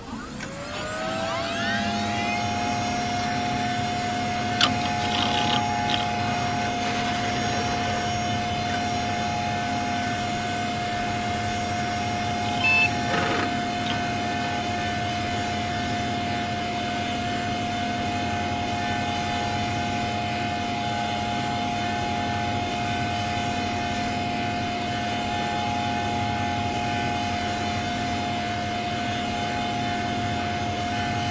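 A Windows system sound put through a 'G Major' effect chain: it starts suddenly, its pitch glides up over the first two seconds, then it settles into a long droning chord that holds steady. Brief higher blips come in at about five and about thirteen seconds in.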